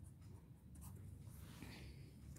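Faint scratching of a pen writing on paper held on a clipboard.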